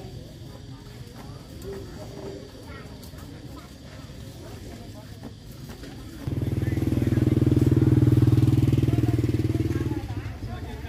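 Motorbike engine running close by, coming in suddenly about six seconds in as a loud low rumble, swelling and then easing off. Before it there are faint voices chatting.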